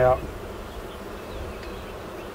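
Steady hum of many honeybees from an opened hive colony while a brood frame is lifted out.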